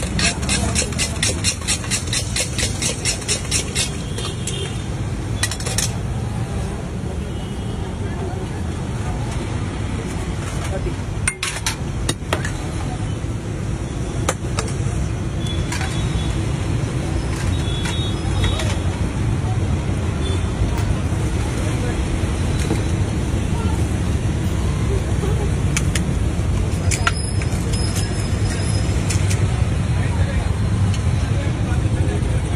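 A steel spoon clinks rapidly against a steel bowl, about five strikes a second, as bhel is tossed for the first few seconds. Then comes steady street noise of traffic and voices, with an occasional clink.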